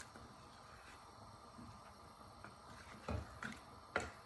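Quiet stirring of a curry with a plastic spatula in a stainless steel pot, with a few soft knocks of the spatula near the end.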